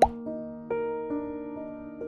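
A short rising pop sound effect right at the start, the loudest thing heard, over soft piano music whose notes ring on and change about a second in.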